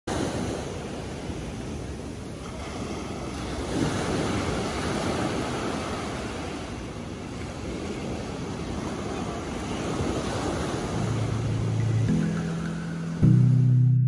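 Small ocean waves breaking and washing up a sandy beach: a steady rushing wash of surf. Music with low held notes comes in about eleven seconds in and grows louder near the end.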